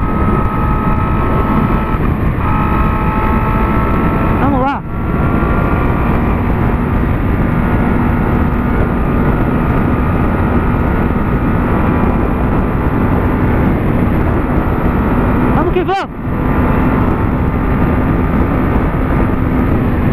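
Honda CB600F Hornet's inline-four engine, fitted with an Atalla 4x1 aftermarket exhaust, running at steady cruising revs under heavy wind noise at road speed. The engine note dips briefly twice, about five seconds in and again near sixteen seconds.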